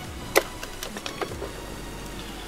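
Small metal hardware being handled during a bolt-on install: one sharp metallic click just under half a second in, then a few light ticks, over a steady low hum.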